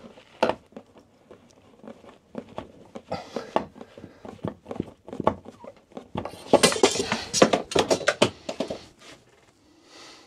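Small clicks and scrapes of screws and a metal curtain rail being handled overhead as a screw is worked in by hand, with a dense run of rattling clicks about six and a half seconds in that lasts about two seconds.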